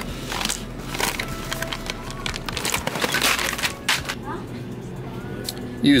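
Plastic ready-rice pouches crinkling and rustling as they are handled on a store shelf, over faint background music.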